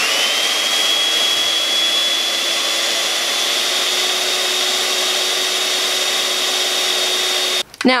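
Electric hand mixer running fast, its whisk attachment spinning a cardboard paper towel tube to wind yarn: a steady high-pitched motor whine that spins up right at the start. It cuts off suddenly near the end as the yarn catches on a knot.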